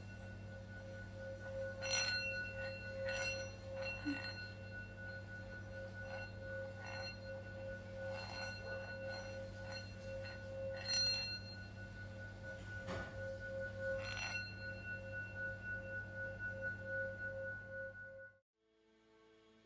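Metal singing bowl rubbed around its rim with a wooden stick, holding one steady ringing tone with higher overtones, with a few brief brighter accents along the way.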